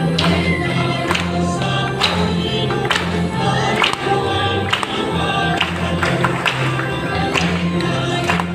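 A church choir sings a hymn with instrumental accompaniment. The low notes are held and change about once a second, with regular sharp accents.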